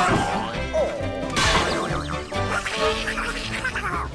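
Cartoon background music with Donald Duck's squawking, quacking voice, and a crash about a second and a half in as he is knocked over by a swinging plank.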